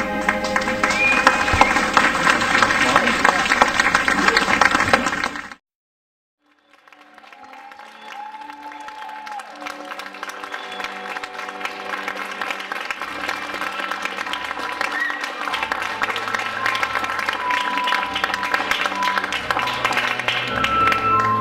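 Audience applauding over the closing bars of the ballet music, cut off suddenly about five seconds in. After a second of silence, music fades in and grows steadily louder.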